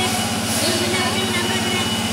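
Steady low machine hum with a thin, steady high whine above it.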